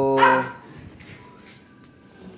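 A dog barks once, briefly, near the start, followed by quiet background.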